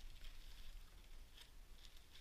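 Faint rustling of plastic-bagged accessories and cardboard as hands handle them inside a box, with a couple of light ticks about a second and a half in.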